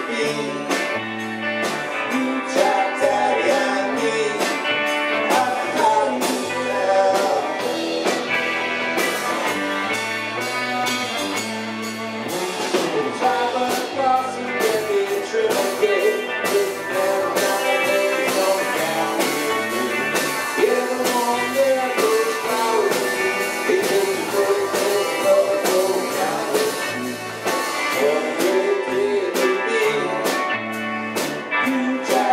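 Live rock band playing a song: two electric guitars, bass guitar and a drum kit with regular cymbal and drum hits.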